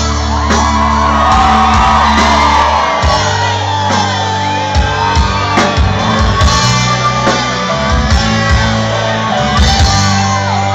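Live band music with a drum kit and a steady low bass line, with voices shouting and whooping over it.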